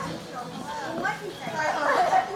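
Several people talking at once, their voices overlapping and getting louder near the end.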